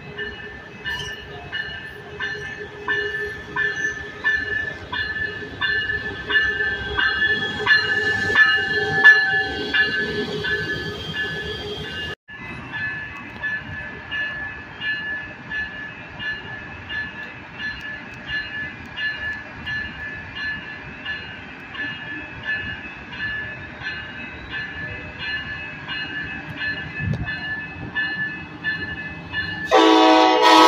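A railway warning bell ringing steadily, about two strikes a second, over the low rumble of an approaching Coaster commuter train. The train's horn starts to sound at the very end.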